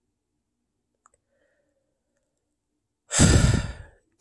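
A man's heavy sigh, a loud breathy exhale close to the microphone, coming about three seconds in and lasting under a second after a near-silent pause.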